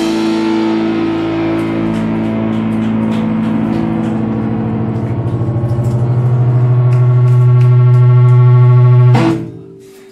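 Electric guitars and bass ringing out on a held final chord with the drums stopped, swelling louder with a pulsing waver, then cut off about nine seconds in.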